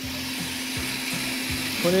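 Food processor running steadily with a constant hum, mixing pie-crust dough of flour, butter and a little water.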